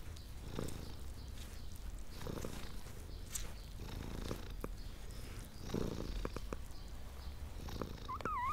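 Domestic cat purring steadily, a low rumble that swells with each breath about every two seconds: a nursing mother cat content with her litter. A few soft clicks come through as she licks a kitten.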